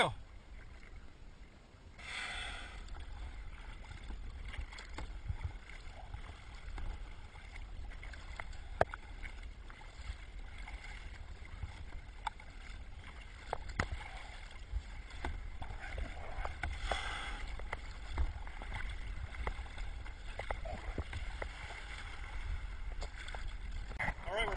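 Blue whale blowing close by: a breathy whoosh of exhaled air about two seconds in and another about two-thirds of the way through. Between the blows there is a low rumble of wind and water against the kayak, with scattered small clicks and drips.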